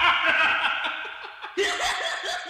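People laughing and chuckling, with a fresh burst of laughter about 1.6 s in.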